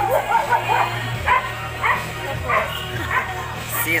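A dog barking, a short bark about every two-thirds of a second, over background music.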